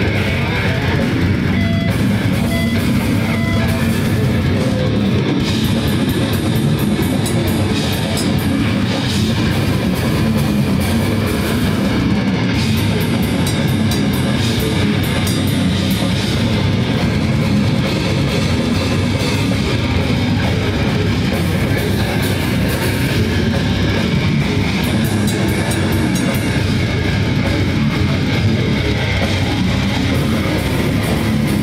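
A heavy metal band playing live, loud and without a break: guitar, bass guitar and a drum kit with rapid cymbal hits.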